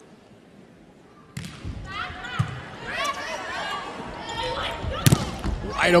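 Volleyball rally in an arena crowd: a sudden ball contact about a second and a half in sets off rising crowd yelling and cheering, with further ball hits and a sharp hard strike about five seconds in.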